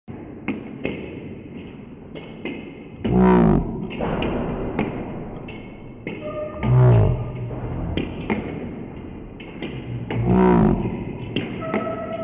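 Table tennis ball clicking off rubber paddles and the table in a steady backhand rally, one to two sharp ticks a second. Three louder calls from a person's voice come about every three and a half seconds.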